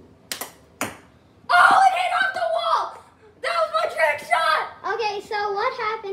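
Two sharp knocks about half a second apart: a hockey stick striking a small ball, then the ball hitting a hard surface. Loud excited shouting follows from about a second and a half in.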